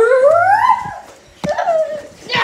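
A long drawn-out cry that rises steadily in pitch, peaks a little before a second in and falls away, followed by a shorter falling cry near the end.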